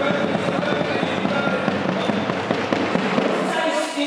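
Spectators clapping: a dense, irregular patter of hand claps, with music and voices from the finish area underneath.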